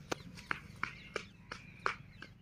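Footsteps in sandals hurrying away, sharp slapping clicks about three a second on the paved road.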